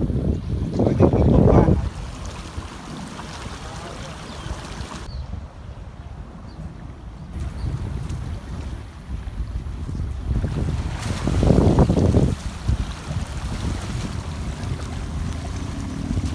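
Wind buffeting the microphone: a low, gusty rumble, with strong gusts at the start and again about eleven seconds in.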